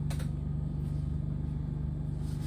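A steady low mechanical hum, with a brief click just after the start.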